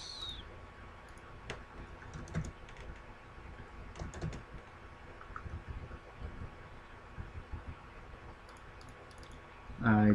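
Computer keyboard and mouse clicks: scattered short taps, a few in a cluster about four seconds in and more near the end, as values are typed into the software. A faint steady hum sits underneath.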